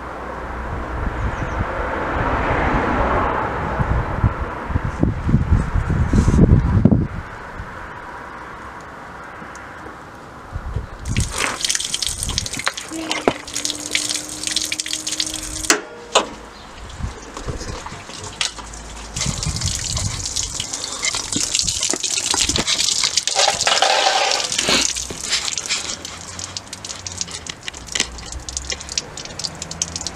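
Coolant, mostly tap water, draining from a disconnected coolant hose under a van and splashing onto tarmac as a steady hiss, starting about a third of the way in. Before that there is a low rumble.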